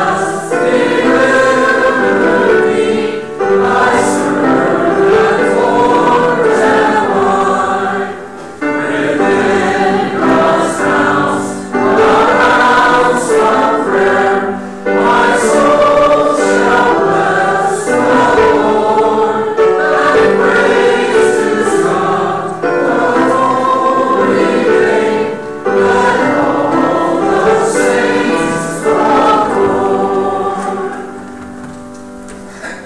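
Church choir and congregation singing a hymn together, in many voices, with brief breaths between phrases.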